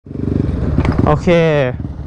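Motorcycle engine running steadily while riding, a low even hum. A man's voice says "OK" about halfway through.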